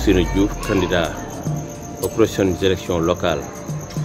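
Crickets chirring steadily in a high, even trill behind a man's speech.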